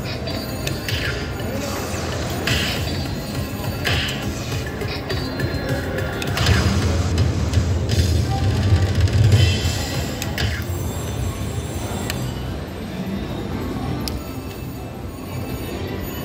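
Aristocrat Lightning Link Tiki Fire slot machine playing its win-celebration music while the bonus win tallies up. A run of short flourishes comes in the first few seconds, then a louder stretch with heavy bass in the middle before it settles down.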